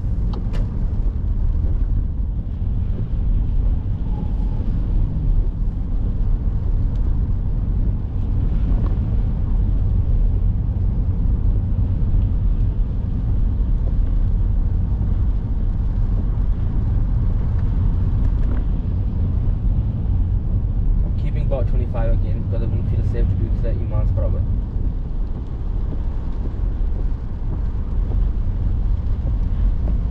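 Steady road and engine noise heard inside a moving car's cabin, a constant low rumble as the car drives along a wet, slushy road.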